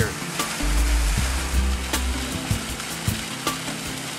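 Small rock waterfall splashing steadily into a garden pond, with background music and its bass notes underneath.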